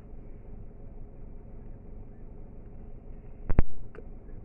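Low, steady rumble inside a car's cabin, broken about three and a half seconds in by two sharp clicks in quick succession, with a fainter click just after.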